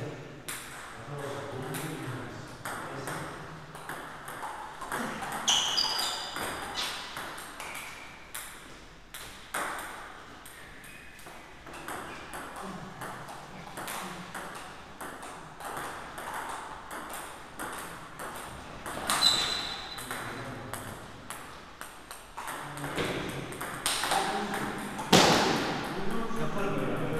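Table tennis rallies: a celluloid ball clicking off paddles and bouncing on the table in quick strings of sharp taps, with short pauses between points and a loud flurry of hits near the end.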